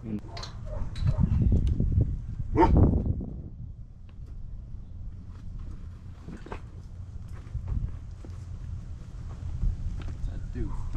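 A person laughing about three seconds in, then a western saddle swung up onto a horse's back, with a knock about six and a half seconds in and faint clicks of leather and tack as it is settled.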